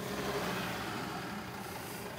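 Mercedes-Benz Sprinter flatbed van's engine running at low revs as it drives slowly by, a steady low hum.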